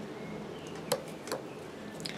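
Knife blade cutting a V-notch into a thin green stick. Two short, sharp clicks, about a second in and again a moment later, over faint steady background noise.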